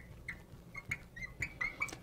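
Marker squeaking on a glass lightboard as a word is written: a series of about eight short, faint, high squeaks, one for each stroke.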